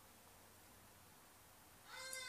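Near silence: room tone. Near the end a single cat meow begins, falling slightly in pitch.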